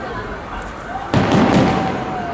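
Aerial fireworks shells bursting overhead: a continuous rumble of distant reports, with one sharp loud bang a little over a second in.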